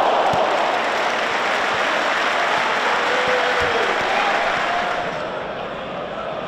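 Stadium crowd noise: cheering and applause from the stands, loud at first and easing off near the end.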